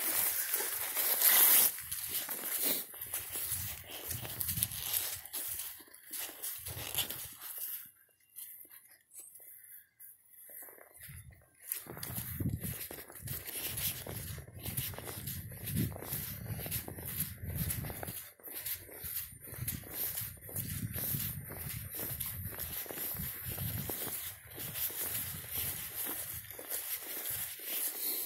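Footsteps walking through dry leaves and grass, an uneven crunch and thud about one to two steps a second, with a short quieter pause partway through.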